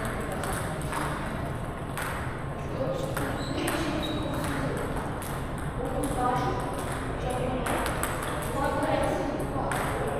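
Table tennis balls clicking off paddles and tables in quick, irregular taps from rallies at several tables at once.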